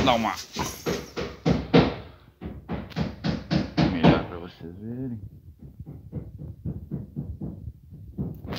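A person's voice talking, louder in the first half and then quieter with short faint sounds.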